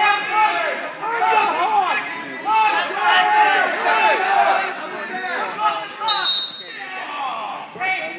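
Spectators shouting and yelling encouragement, many overlapping voices echoing in a gymnasium. A brief high whistle sounds about six seconds in.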